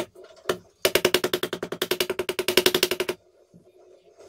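A small hammer tapping a fret wire down into its slot in a guitar fretboard: two single taps, then a fast, even run of rapid taps for over two seconds that stops suddenly.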